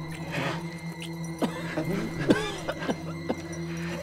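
Short, high-pitched laughing sounds, sweeping up and down in pitch, over a low, steady drone in the eerie film score.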